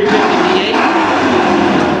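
Drag-racing engines running loud and steady at the starting line, among them a Chevy S10 pickup's 358-cubic-inch small-block V8, as the Super Stock cars stage.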